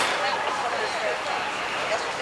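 Steady outdoor street noise with faint, brief voices of people walking nearby.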